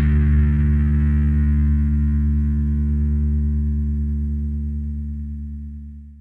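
The final chord of a heavy progressive metal song, a distorted electric guitar chord held and left to ring, slowly fading away and dying out near the end.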